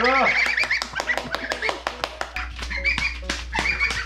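Young geese (goslings) peeping over and over in short, high calls, several birds at once, with a lower, voice-like call right at the start.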